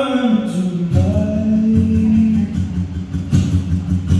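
Live acoustic song: a man sings long held notes over his own acoustic guitar accompaniment.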